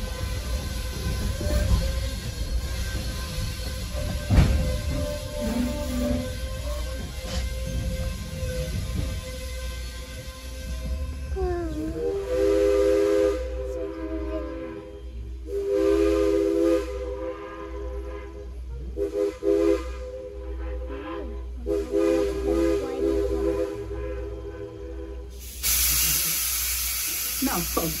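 Steam locomotive's chime whistle blown several times, mostly long blasts with a short one among them, for a crossing, over the low rumble of the train. Near the end comes a loud, steady hiss of steam.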